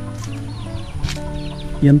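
Chickens chirping in short, repeated high, falling calls over steady background music, with a single spoken word near the end.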